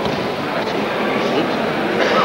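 Steady background hiss and room noise of a large hall, with no distinct event standing out.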